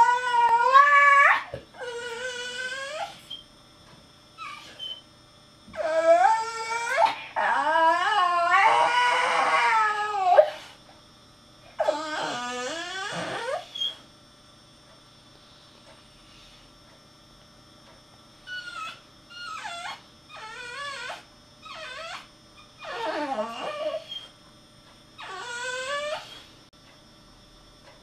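Bull terrier whining and whimpering: a run of high, pitch-bending whines, some lasting a few seconds, then after a pause a string of shorter, fainter whimpers.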